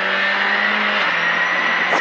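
Rally car engine at full throttle heard from inside the cockpit, a steady high-revving note climbing slightly in pitch, over the noise of tyres on the loose forest track.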